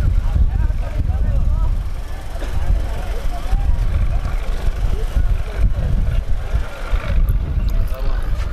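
A large outdoor crowd of men shouting and calling over one another, many voices at once, over a constant heavy low rumble.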